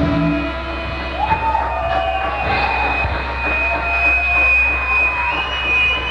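A live rock band's song breaks off at the start, and a high steady whine carries on over crowd noise, rising a little in pitch near the end, with wavering lower tones under it.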